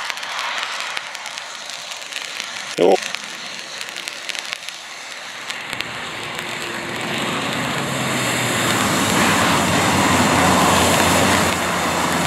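Honda CR-V driving through muddy puddles on a dirt track, its engine running and tyres churning and splashing through mud and water. It grows louder in the second half as it comes closer, with a brief loud sound about three seconds in.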